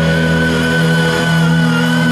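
Amplified electric guitars of a live rock band holding one long sustained chord, steady and unbroken.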